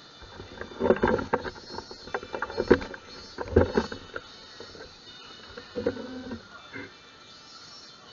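Camera handling noise: four bursts of close bumping and rubbing on the microphone as the camera is moved, over a faint steady background.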